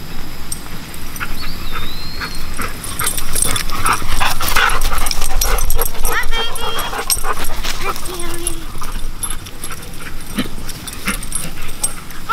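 Two dogs, a golden retriever and a yellow Labrador, playing close up: a few short high-pitched cries among scuffles and knocks, busiest about halfway through.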